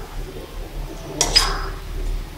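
A metal slotted spatula stirring diced plantain fry in a kadai, with low scraping and one sharp, ringing clink of the spatula against the pan about halfway through.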